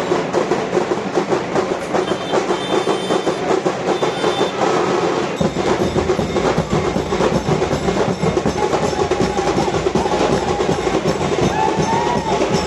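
Fast, loud drumming: a dense, steady stream of rapid beats, the kind of percussion a dancing procession crowd moves to.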